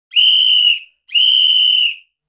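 Two long, steady whistle blasts about a second apart, opening a cha-cha-cha dance track.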